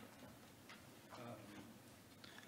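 Near silence: room tone with a few faint clicks and a faint hesitant "uh" from a man's voice about a second in.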